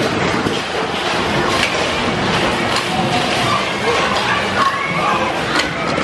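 Bumper-car ride din: a steady mix of crowd voices and music, with a few sharp knocks about 1.5, 3 and 5.5 seconds in.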